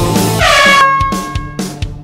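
Horn-like timer signal sounding for about a second over rock workout music, marking the end of a work interval and the start of the rest period. Once it stops, the music drops back to a sparse drum beat.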